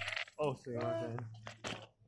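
Small coins dropped on a hard floor, clicking as they land, with a further click near the end. A short voiced utterance sits in the middle.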